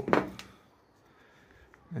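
A spoken word trails off at the start. A sharp click follows, then faint clicks near the end as a LiPo battery pack and its connector wires are handled.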